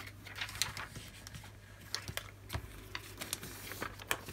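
Light clicks, taps and rustles of a plastic laminating pouch and a strip of card being handled on a cutting mat, over a faint steady low hum.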